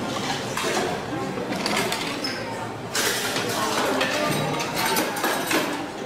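Plates and small dishes clinking and clattering in quick succession as they are swept up and stacked by hand, over background chatter.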